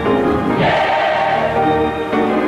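Gospel mass choir singing, with the full choir coming in louder about half a second in.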